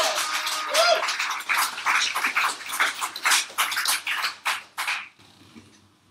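Live audience applauding, with a whooping cheer at the start; the clapping dies away about five seconds in.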